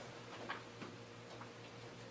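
Faint, quiet room with a wall clock ticking about once a second, a few other light clicks between the ticks, and a low steady hum.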